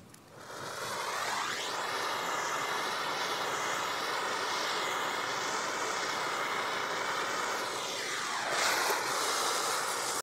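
A handheld gas torch's flame burning steadily as it scorches a wooden board, a hissing roar that comes up about a second in. Its tone sweeps as the nozzle moves over the wood, and it swells slightly near the end.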